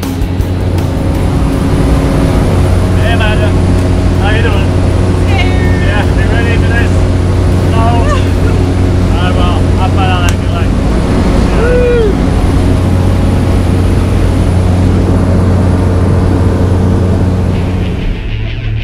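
Skydiving aircraft's engine and propeller droning loudly and steadily, heard inside the cabin in flight. Voices call out briefly over the drone from about three to twelve seconds in.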